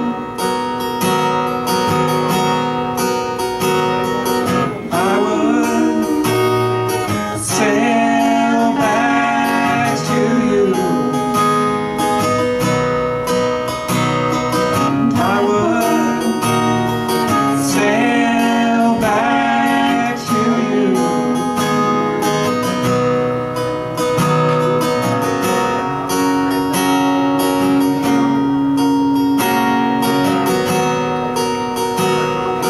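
Acoustic guitar strummed through a PA in a live instrumental passage, with held keyboard notes sustained underneath.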